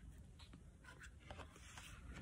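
Near silence with faint paper rustling and a few soft ticks as the page of a picture book is turned.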